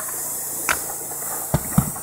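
A metal shim being pushed up under a cedar roof shake: a sharp click about a third of the way in, then two low knocks near the end, over a steady hiss.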